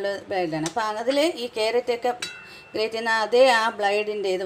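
A woman speaking, with two sharp clicks from a plastic box grater being handled on the counter, one under a second in and one about two seconds in.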